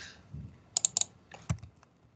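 Keystrokes on a computer keyboard: a quick run of clicks about three-quarters of a second in, then a couple more near the end.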